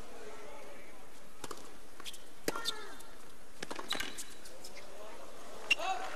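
Tennis ball knocks over the low murmur of a stadium crowd: several sharp bounces and racket hits spaced about half a second to a second apart, the loudest a racket strike near the end.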